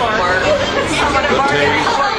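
Several people talking at once: indistinct, overlapping chatter with no single clear voice.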